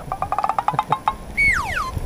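About a second of rapid, evenly spaced ratcheting clicks, then a clean whistle sliding steeply down in pitch. It is a comic sound effect added in editing.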